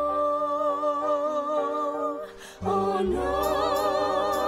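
Musical theatre singing: a long held sung note that ends about two seconds in. After a short pause, several voices come in together with wavering vibrato near the end.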